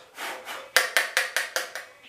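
Makeup powder brush rubbing in a series of quick strokes, about five a second, as bronzer is swept on.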